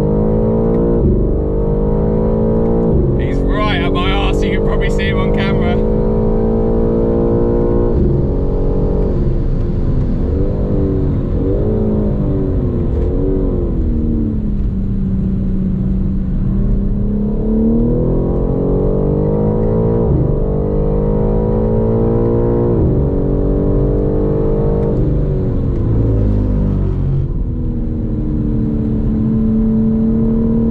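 BMW M4 Competition's twin-turbo straight-six heard from inside the cabin at full effort on track, its note climbing through each gear and falling sharply at every shift, with a steadier spell in the middle as the car holds speed through a corner.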